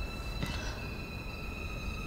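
Tense background score: a steady, dissonant drone of high held tones with a low rumble beneath, and a single short click about half a second in.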